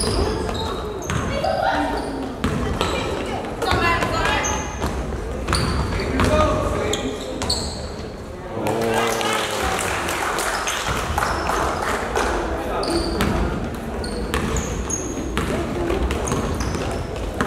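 A basketball is dribbled on a hardwood gym floor, with repeated sharp bounces, short high squeaks and shouting voices throughout; the voices swell about halfway through.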